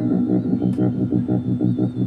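Electronic music: a low synthesizer pulse throbbing evenly, about six or seven beats a second.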